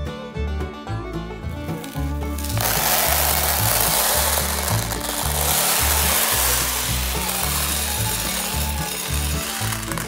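Dried corn kernels rattling into and across a plastic bin as they are poured and spread by hand: a dense, steady rattle that starts about two and a half seconds in and stops shortly before the end, over background music.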